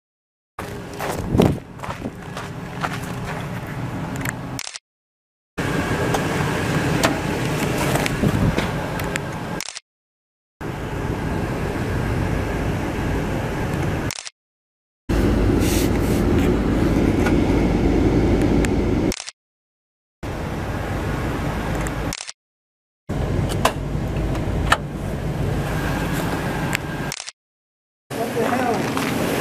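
Steady low background noise with scattered handling knocks and rubs, heard in a series of separate takes broken by short dead-silent gaps.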